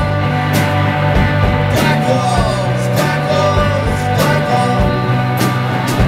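Live rock band playing: electric guitars ringing out sustained chords over a drum kit, with cymbal crashes roughly once a second and a few sliding guitar notes about two seconds in.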